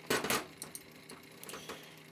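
A microphone cable's plug being handled and pushed into a small mixer's input jack: a short clatter at the start, then a few faint clicks.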